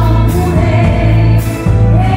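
Live gospel song: a woman singing into a microphone over an amplified band with electric guitar and strong, sustained bass notes.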